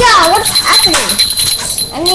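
A child's high-pitched wordless vocalizing, the pitch sliding up and down in short whiny calls. A thin steady high tone runs underneath.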